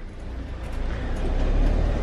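Motorhome engine and road noise heard from inside the cab as it drives through a narrow rock tunnel: a steady low rumble that grows louder over the two seconds.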